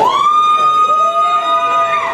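A siren wailing: one tone sweeps up and then holds steady, with a second, lower tone rising in under it about a second in.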